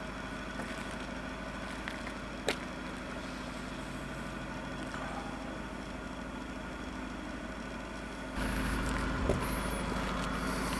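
Steady low hum with a single sharp click about two and a half seconds in; the noise grows louder near the end.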